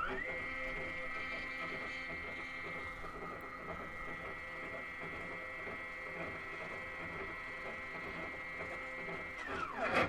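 Stepper motors of a GRBL-controlled coil winder running a coordinated move: the geared spindle stepper turns twenty turns while the lead-screw carriage traverses four inches. A high whine rises in pitch as the motors accelerate, holds steady, then falls just before the end as they decelerate to a stop.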